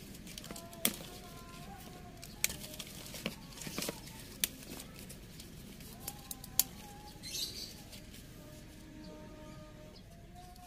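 Red betel (sirih merah) leaves picked by hand: a few sharp snaps of leaf stalks breaking, with brief rustling of the foliage. Faint bird calls sound in the background.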